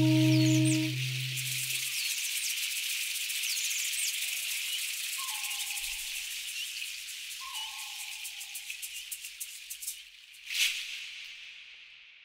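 A low sustained musical drone fades out in the first two seconds. It leaves a steady, high-pitched chorus of insects with a few faint bird chirps and two short falling calls. Near the end a brief whoosh is the loudest moment, and then the ambience fades away.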